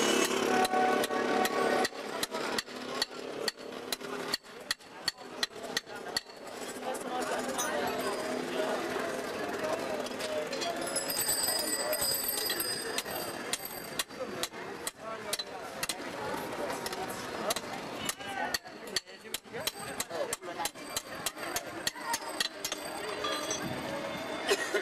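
Busy street sound: people talking, with many sharp irregular knocks and clicks of metal. The knocks are thickest near the start and near the end, and the voices are louder in the middle.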